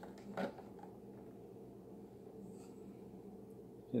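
A clear plastic dessert container and lid being handled: one short plastic click a fraction of a second in, then faint rubbing over a steady low room hum.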